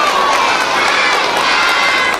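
Many children's voices shouting and cheering together, high voices overlapping in a steady crowd noise.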